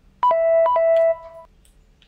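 Mobile phone low-battery alert: two quick electronic chimes, each a short higher note falling to a lower one.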